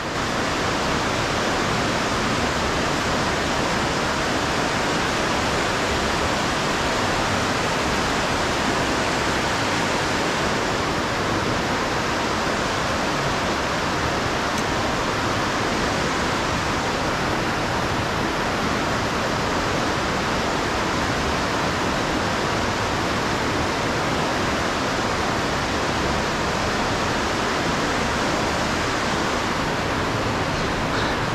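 Fast-running river water rushing over rocks, a steady, even rush with no break.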